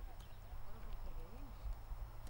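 Faint voices over a low rumble, with a light knock or two as a log of firewood is stood on end for splitting.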